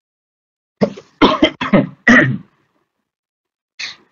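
A person coughing and clearing their throat in a quick series of short bursts, followed by a brief breath near the end.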